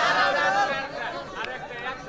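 Indistinct speech and chatter, softer than a speaker close to the microphone.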